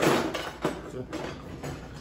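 A utensil scraping briefly in a baking pan, followed by a few faint knocks and handling sounds of kitchen utensils.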